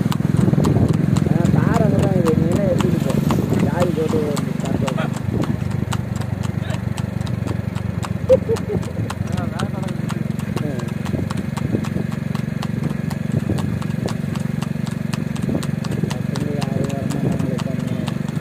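Hooves of a Sindhi crossbred mare clip-clopping on asphalt as she trots pulling a two-wheeled cart, over a steady engine hum from the following vehicle.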